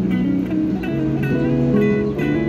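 A guitar being played, notes and chords plucked in a steady pattern and left to ring.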